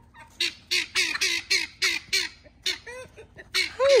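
Farm fowl squawking in a rapid run of short, harsh calls, about four a second. Near the end comes a longer, louder call that falls in pitch.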